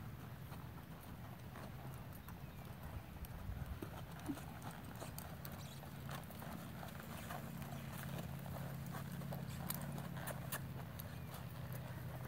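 A horse's hooves striking soft arena dirt in an irregular run of muffled beats, growing clearer and more frequent about halfway through as the horse comes close. A steady low hum runs underneath.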